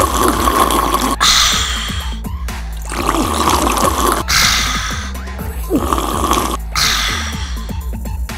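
Three rounds of breathy mouth noises, blowing on and sipping hot tea, each about two seconds long, over steady background music.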